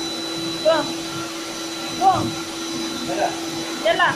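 A Siberian husky whines in short, high, rising-and-falling cries, four times, over the steady hum of an electric motor running nearby.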